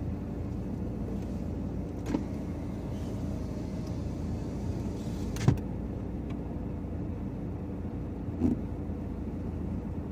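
Car engine running slowly, a steady low hum heard from inside the cabin. Three short sharp knocks break in, about two seconds in, midway (the loudest) and near the end.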